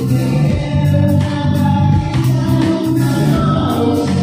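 Live band music played loud through a PA: singing over a guitar and a drum beat.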